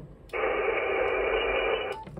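Hiss of HF band noise from a Yaesu FTDX10 transceiver's speaker on the 20-metre band in SSB mode, hemmed into the narrow voice passband of the receiver filter. It switches on abruptly about a third of a second in and cuts off just before the end.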